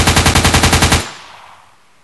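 Sound effect of rapid automatic gunfire: a loud, fast, even string of shots that stops about a second in and trails off in a fading echo.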